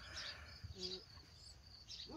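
Faint high-pitched insect chirping, a few short chirps a second, with a brief hummed "mmh" from a person just before the middle.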